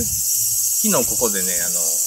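A loud, steady, high-pitched chorus of summer insects such as crickets or cicadas, starting abruptly. A man's voice speaks briefly in the middle.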